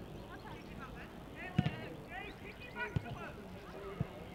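Distant voices calling and shouting on a sports field over faint background noise, with two sharp knocks about a second and a half and three seconds in.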